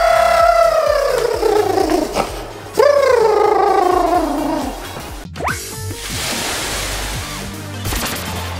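Two long drawn-out voice calls over background music, each sliding steadily down in pitch. About five seconds in comes a sharp click and a rising whoosh, then an electronic intro jingle with a noisy wash.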